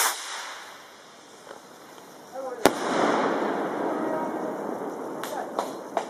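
A firework going off: a hiss that fades away over the first second, then a sharp bang about two and a half seconds in followed by a steady crackling hiss, with two sharper pops near the end.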